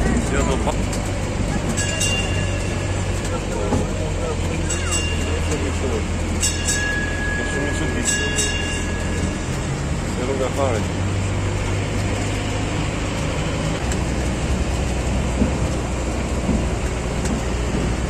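Engine of a sightseeing road train running with a steady low drone, heard from its open carriage, with people's voices in the background.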